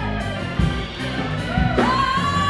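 Live band playing: drums, electric guitar and keyboards, with a high note that slides up and is held near the end.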